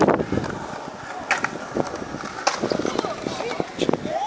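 Skate wheels rolling on concrete, loud at first and fading just after a sharp clack, followed by scattered clacks and knocks from skates and boards. Children's voices in the background.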